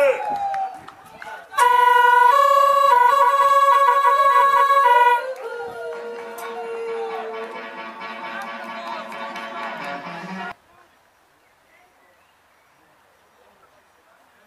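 Goal jingle: a loud held horn-like tone, briefly broken several times, runs for about three seconds. Quieter music follows and cuts off abruptly about ten and a half seconds in, leaving faint outdoor background.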